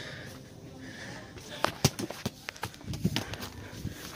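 A handful of sharp, irregular knocks and clicks, the loudest about two seconds in, over a faint background hum.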